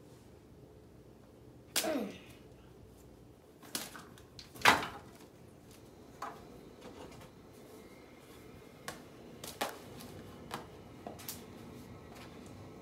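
Irregular sharp clicks and knocks of plastic action figures and their small accessories being handled and set down, the loudest about halfway through and another near the start, then several fainter taps.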